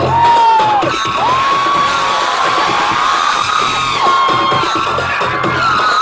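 Live concert heard from inside the crowd: loud amplified music with a repeating bass beat, and many voices cheering and whooping over it.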